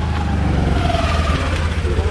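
Motor vehicle engine running, a steady low drone with a faint whine that falls in pitch.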